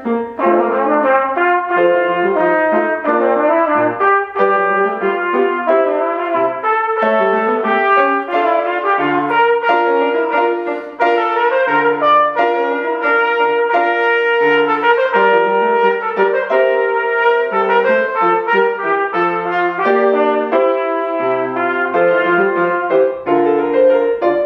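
Trumpet playing a Baroque sonata melody, accompanied by grand piano.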